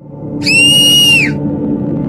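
A high, whistle-like cartoon sound effect from an animated intro sounds once for about a second, rising slightly as it starts and dropping away at the end. It plays over a low ambient music bed that follows an abrupt stop in the percussive intro music.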